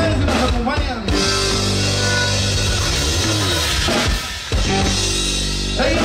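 Live conjunto music: button accordion held over guitar and a drum kit, with a brief break about four seconds in before the band comes back in.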